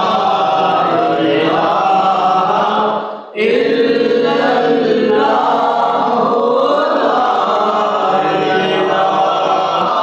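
Men's voices chanting a Punjabi naat in long, drawn-out notes, with a brief break about three seconds in.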